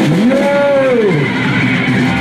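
Live punk band: an electric guitar note swoops steeply up and then back down in pitch over about a second, over the band's sustained held notes.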